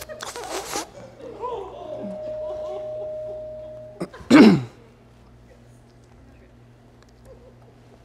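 A single loud sneeze about four seconds in, its pitch dropping sharply as it ends. A faint held tone comes before it and low room noise after it.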